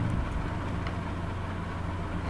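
A steady low hum of background noise, with no speech.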